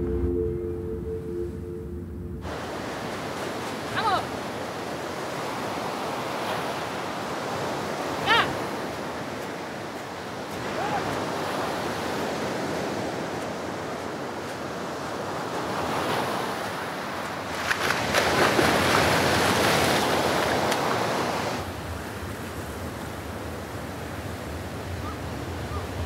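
Music ends about two seconds in and gives way to surf breaking on a sandy beach: a steady wash of waves that swells in surges, loudest about eighteen to twenty-one seconds in, with some wind. A few brief high calls stand out over it.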